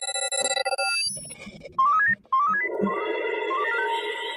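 Electronic music jingle: a held synth chord for about a second, then quick runs of beeping notes climbing in steps.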